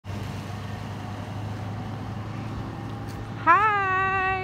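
A steady low hum with a faint hiss underneath. About three and a half seconds in, a voice starts on a long, drawn-out word.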